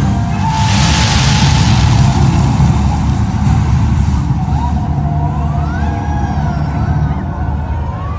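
Fireworks show soundtrack music playing loudly over the rumble of fireworks, with a burst of hiss about a second in. Rising and falling whistle-like tones come in during the last few seconds as the sound slowly fades.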